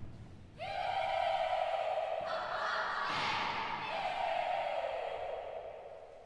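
High girls' voices singing a loud, sustained high note that enters about half a second in. It grows harsher and fuller around two seconds in, then slides downward and fades near the end.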